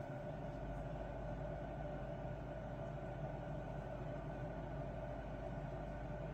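Steady low background hum of room tone with a few faint steady tones and no distinct events.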